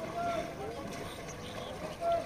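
Raft paddles dipping and splashing in calm river water, with distant voices calling out over the water.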